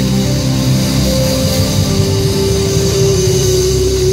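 Live band music played loud, with long held notes over a steady low end, from a worship band of electric guitars, drums and keyboards.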